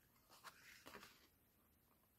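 A few faint snips of small scissors notching the edge of heavy foiled card, clustered in the first second, then near silence.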